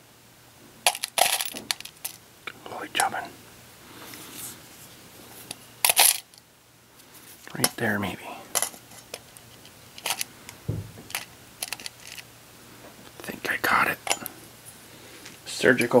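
Loose metal screws and bolts clinking in a small metal tin as needle-nose pliers rake and pick through them, in scattered sharp clicks and short rattles.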